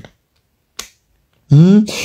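Two short, sharp clicks, one at the start and one just under a second in, then a person starts speaking about one and a half seconds in.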